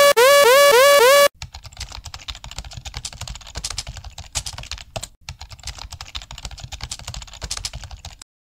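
A loud electronic tone gliding up again and again in quick succession, cut off just over a second in, followed by a rapid, steady clatter of computer-keyboard typing.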